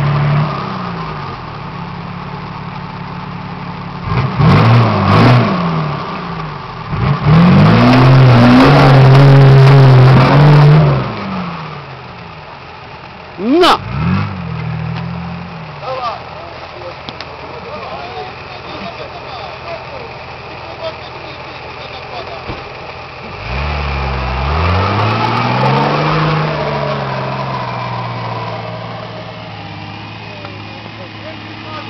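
An off-road 4x4's diesel engine revving hard in repeated bursts: a rise about four seconds in, a long loud high-revving stretch around the eighth to eleventh second, and another climb near the end, settling to lower running in between. A single short, sharp rising squeal cuts through in the middle.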